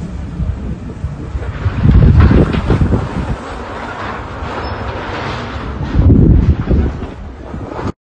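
Wind buffeting the microphone in loud gusts, strongest about two seconds in and again about six seconds in.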